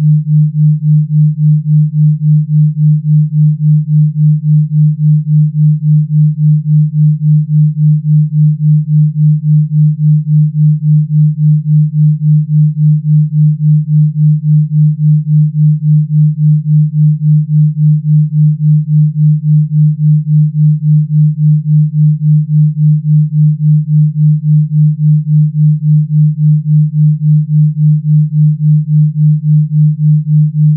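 Electronically generated low sine tone (a Rife frequency), held at one pitch and pulsing evenly in loudness several times a second.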